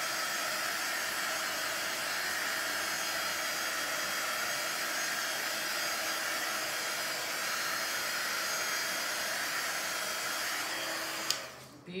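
Electric heat gun blowing steadily, a constant airy hiss with a faint whine, switched off abruptly near the end. It is being run over wet acrylic pour paint to pop air bubbles and bring up cells.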